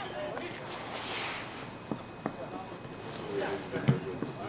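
Football match play heard from the stand: faint, distant players' shouts with a few short, sharp knocks of a football being kicked, two of them close together about two seconds in and another near the end.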